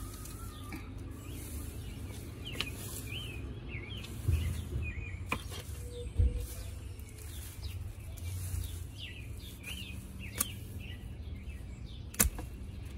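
Small birds chirping over and over in short rising-and-falling calls, with a few sharp clicks and a couple of low thuds in the middle.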